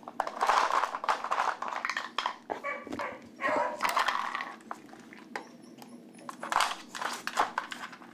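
A beagle sniffing and snuffling at a plastic treat-puzzle toy in breathy bursts about a second long, with light clicks from the toy's plastic pieces.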